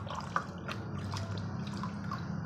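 A hand swishing a toy in a bucket of muddy water, with small splashes and drips; water drips off it as it is lifted out near the end.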